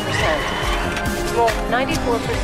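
Epic orchestral music with a steady low drone, overlaid by voice-like sounds that glide up and down in pitch.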